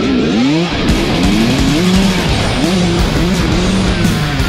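Kawasaki KX100 two-stroke single-cylinder dirt bike engine revving up and dropping back several times as the bike moves off, heard close to the bike. Music plays at the same time.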